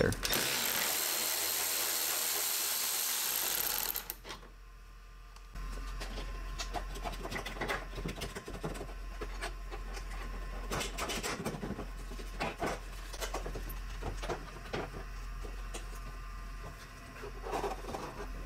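A power tool runs steadily for about four seconds, backing out the 10 mm bolt that holds the headlight. It is followed by scattered clicks and knocks as the plastic headlight assembly is worked loose from the car.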